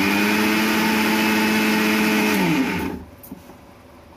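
Electric kitchen mixer-grinder running at speed, grinding dry coriander-leaf powder. It is switched off about two and a half seconds in, and the motor pitch falls as it spins down.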